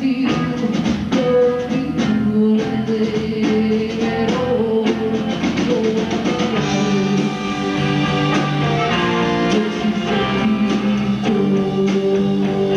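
Live rock band playing: electric guitars, bass and drum kit, with held notes over a steady beat.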